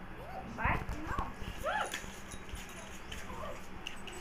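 A puppy yapping: four short, high yaps that rise and fall in pitch in the first two seconds, with a soft thump under the second, then a couple of fainter yaps later on.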